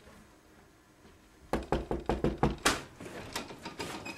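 Knocking on a door: after a quiet start, a quick run of about eight sharp raps at roughly six a second, followed by a few fainter knocks or clicks.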